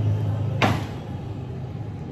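A steady low hum with a single sharp knock about half a second in, ringing briefly.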